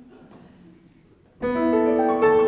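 Quiet room tone, then about one and a half seconds in a piano enters with the opening chord of a song accompaniment. Its notes ring on, with more notes joining just after.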